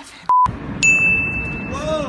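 A short, loud electronic beep, then about half a second later a longer, higher ding-like tone lasting under a second, both laid over a steady hum of city street noise that begins with the beep.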